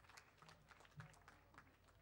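Faint, scattered applause from an audience: many irregular hand claps.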